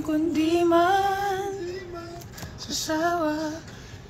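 A woman singing a slow melody with long held notes, in two phrases with a short break between them.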